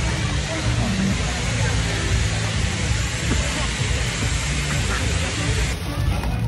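Steady hiss of stage cold-spark fountains spraying, with voices and low music bass underneath.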